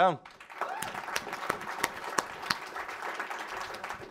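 Audience applauding: many hands clapping at once, starting about half a second in and keeping up at an even level.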